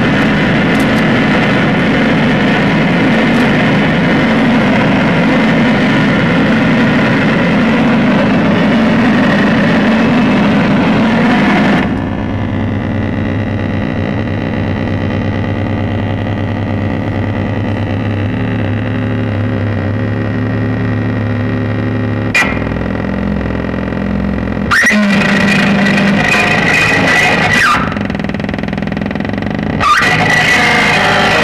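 Live electronic noise music from a table of effects pedals and electronics: a dense wall of harsh, distorted noise that cuts off abruptly about 12 seconds in, leaving a lower droning hum. A sharp click comes about 22 seconds in, and a short burst of harsh noise flares up near the end.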